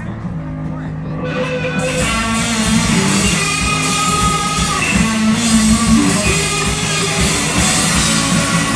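Loud live punk rock band: electric bass and guitar playing low sustained notes, then the full band with drums and cymbals coming in about two seconds in.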